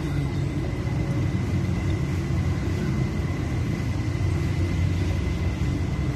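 Steady low mechanical rumble with a faint, thin high-pitched whine running through it.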